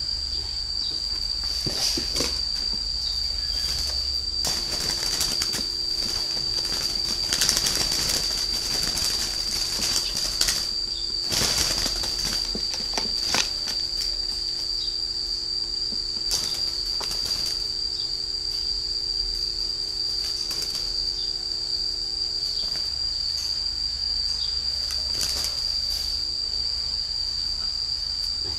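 Spotted doves flapping their wings in bursts inside a cardboard shipping box as it is handled, mostly in the first half. A steady high-pitched insect chirring runs underneath.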